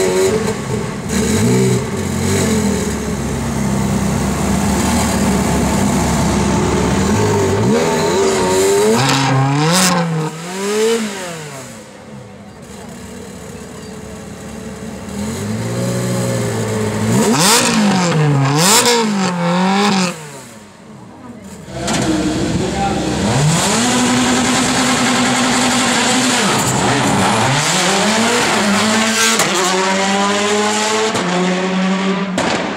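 Ferrari 360 Spider's V8 revved through its quad-tip exhaust while standing still: it idles and then rises and falls in repeated blips, with a quick run of sharp blips around the middle and longer revs near the end.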